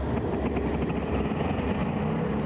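Fighter jet engines at full power during a carrier catapult launch, heard from inside the cockpit: a loud, steady deep rumble and roar.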